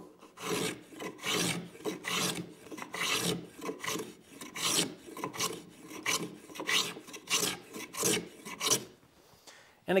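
Block plane shaving the curved top edge of a wooden board, smoothing a rough bandsawn arc: a quick series of short strokes, about two a second, that stop about a second before the end.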